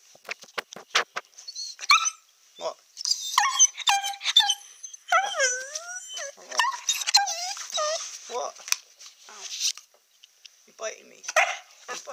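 A puppy of about six months whining and yelping close to the microphone in many short calls that slide up and down in pitch, with a quick run of sharp clicks near the start.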